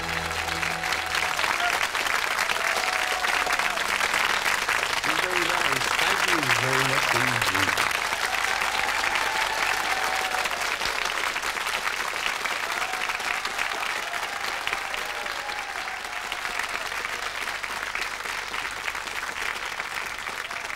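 Studio audience applauding at the end of a song, the clapping steady at first and then slowly easing off.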